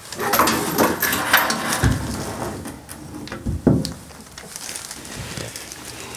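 Handling of a kitchen faucet being fitted: its supply hoses scraping down through a freshly drilled hole in a wooden countertop, with irregular knocks. Two dull thuds come about two seconds in and just under four seconds in, as the faucet base is set on the wood, then quieter rustling.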